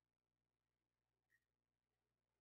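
Near silence, with one very faint brief click a little over a second in.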